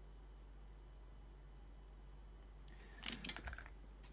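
Quiet room tone with a steady low mains hum, then, about three seconds in, a brief flurry of small clicks and rustles from things being handled on the desk.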